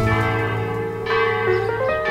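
Church bells ringing: several strikes, a new one about every second, their tones ringing on and overlapping.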